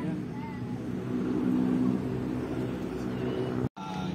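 An engine running steadily, with faint voices over it; the sound drops out for an instant near the end.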